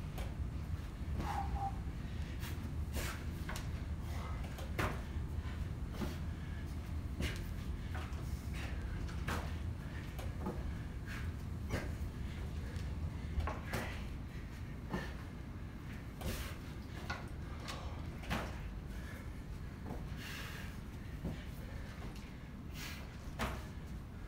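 Irregular knocks and thuds, about one or two a second, from a man exercising by squatting and bending down to a plastic jug on a rubber gym floor, over a steady low hum.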